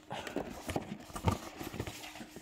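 A DVD box set being fumbled and turned in the hands, giving a few irregular light knocks and handling rustles.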